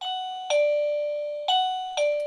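Plug-in wireless doorbell receiver playing its standard electronic "bing-bong" chime twice: a higher note then a lower one half a second later, each ringing out and fading.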